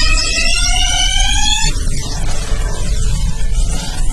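Produced logo sting sound effect: a buzzy tone rising slowly in pitch over a deep rumble, breaking off a little under two seconds in into a noisy, crackling rumble.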